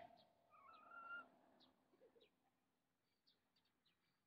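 Near silence with faint bird calls: one short wavering call about a second in, then a few brief high chirps.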